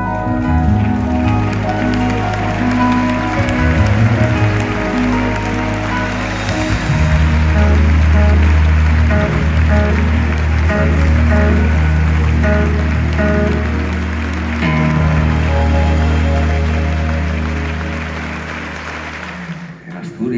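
Live band music with sustained bass notes and layered instrument tones, dying away over the last couple of seconds.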